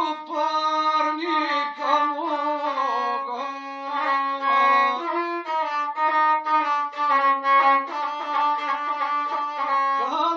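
Gusle, the single-string bowed folk fiddle, bowed in a quick run of short notes.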